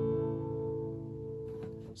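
A G major chord on an acoustic guitar ringing out and slowly fading. Near the end the strings are muted with the palm.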